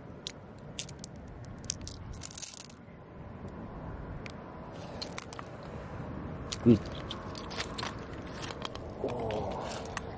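Scattered clicks and crunches of oyster shells and stones knocking and scraping together as they are handled in shallow water and mud. A short, loud voiced exclamation comes about two-thirds in, and a murmuring voice near the end.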